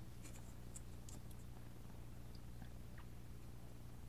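Faint scratching of a caliper tip scoring a line along a steel ruler into thin white plastic sheet: a few light, separate scrapes over a low steady hum.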